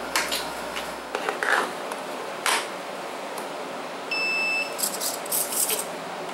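Handling clicks and knocks, then a single steady electronic beep lasting just over half a second about four seconds in, from a Turnigy 9X radio transmitter switched on for a test. A few sharp clicks follow.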